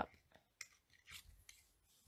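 Faint handling noise of a narrow cardstock strip and a small handheld paper punch: a few soft scrapes and rustles of paper against the punch.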